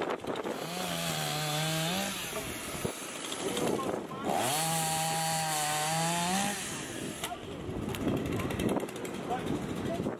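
Two-stroke chainsaw cutting into the trunk of a fallen tree, run up to speed in two bursts of about one and a half and two seconds, the pitch rising briefly at the end of each burst.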